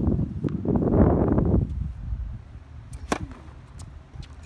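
A tennis ball bouncing on a hard court, then one sharp crack of a racket striking the ball on a serve about three seconds in. Low rumbling wind noise on the microphone runs through the first half and dies away.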